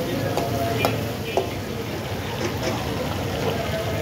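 Chunks of meat sizzling in a large iron wok, with a metal ladle stirring and knocking against the pan: several sharp clanks in the first second and a half, then steady frying.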